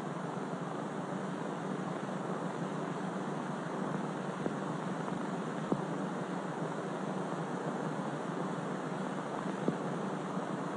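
Steady hiss of an old 1940s film soundtrack with no narration, broken by three faint clicks: the surface noise of the worn sound track.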